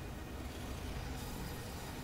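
A low, steady rumble with a hiss that grows about a second in, from the sound effects of an animated fight scene.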